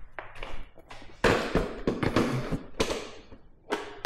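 Motorcycle seat being set back onto a Suzuki GSX-R1000R and pressed down into place: a series of taps, knocks and thumps, the loudest about a second in.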